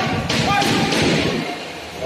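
Thuds of gloved punches and kicks in a quick kickboxing exchange, bunched in the first second or so, with voices shouting.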